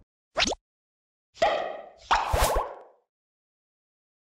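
Sound effects for an animated logo reveal: a quick falling swish, then two short popping hits about a second and a half and two seconds in, the second louder, each ringing briefly before dying away.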